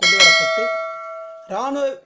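A single bell chime, struck once and ringing with several clear tones that fade, cut off suddenly about a second and a half in: the notification-bell sound effect of a subscribe-button animation.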